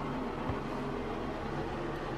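Steady background room noise, a low hum with an even hiss and no distinct events.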